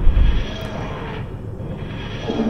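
A steady low rumbling drone with hiss, with a brief low thud right at the start.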